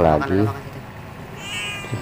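A Persian cat's short, thin, high-pitched mew about a second and a half in, after a few spoken words at the start.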